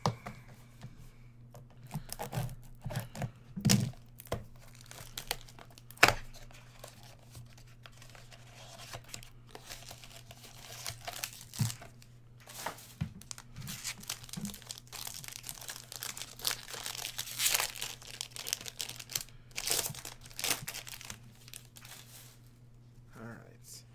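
Foil wrappers of 2017/18 Upper Deck SP Game Used Hockey card packs being torn open and crinkled, with clicks and taps of the card box and cards being handled. A few sharp knocks stand out in the first six seconds, and the crinkling is densest in the second half.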